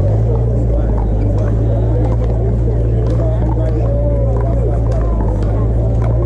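Scattered sharp pops of pickleball paddles hitting the plastic ball, from several games at once, over the murmur of distant players' voices and a steady low rumble.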